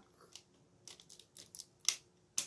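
Light plastic clicks and taps as a toy scope mount is pressed onto a rifle built of Lego bricks, about five short clicks with the loudest near the end.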